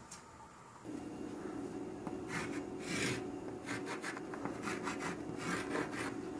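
A stick of chalk writing on a chalkboard, scraping and rubbing in a series of short strokes that start about a second in.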